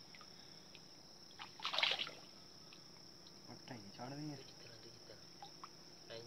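A short splash of water about two seconds in as a snakehead fish caught in a fishing net is handled in the river, over a steady high-pitched insect drone. A voice is heard briefly around four seconds.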